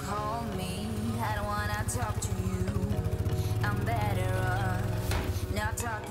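A background pop song with a melody line over a steady beat. Underneath it, the low, even running of an ATV engine.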